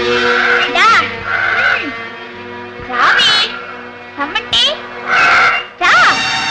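Film background music with held notes, under a series of short, wavering high-pitched calls that come about once a second.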